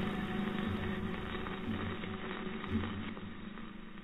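A steady low hum with an uneven rumble beneath it, slowly fading out.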